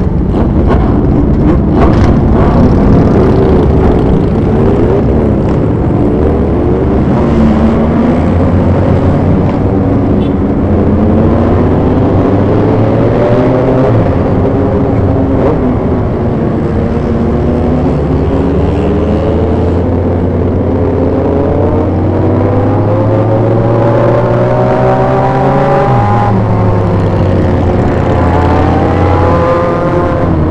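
Big motorcycles running together in a group ride, heard from on board one of them. The near bike's engine climbs steadily in pitch as it accelerates, drops at an upshift shortly before the end and climbs again, with other bikes' engines rising and falling around it.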